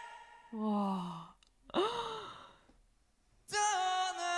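Two short breathy vocal sounds, like sighs: the first falls in pitch, the second rises and falls. After a brief hush, sustained singing comes back in near the end.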